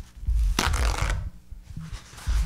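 Paper towel on its roll rubbed and handled by hand right at a microphone, with a loud burst of papery rustling about half a second in. Deep low thumps run underneath.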